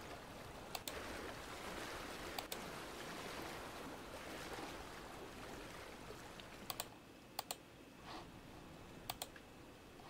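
Faint wind-and-water ambience sound effect ('Water Lapping Wind'), a soft even rush that fades out after about six seconds. Sharp computer mouse clicks, mostly in quick pairs, come several times and are the loudest sounds.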